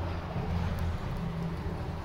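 Outdoor background noise: a low, steady rumble with a faint hiss and no distinct event, the rumble easing about halfway through.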